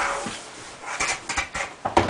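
Large plastic pipe being handled and swung upright: a fading rub at the start, then a cluster of short scrapes and knocks in the second half.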